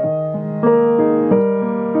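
A 5-foot Hamburg baby grand piano being played: a slow, gentle passage of chords, with a new chord struck about every two-thirds of a second and each ringing on under the next.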